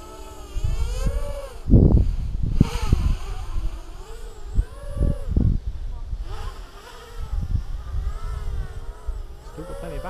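Quadcopter's electric motors and propellers whining, their pitch gliding up and down as the throttle changes. Loud gusts of wind hit the microphone about two seconds in and again around five seconds.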